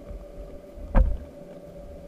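Underwater sound picked up by a camera lowered off a pier: a steady low rumble with a steady mid-pitched hum, and one sharp thump about a second in.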